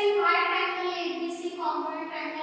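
A girl's voice in long, held, sing-song tones, with no other sound standing out.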